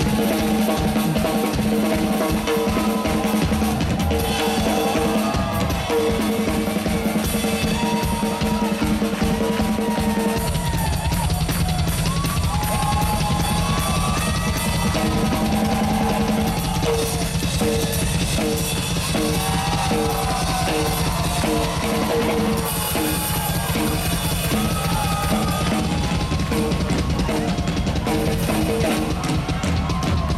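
Live drum kit played hard: fast, dense strokes and rolls on snare, toms and cymbals, with a sustained low note held underneath. The bass drum comes in much heavier about ten seconds in.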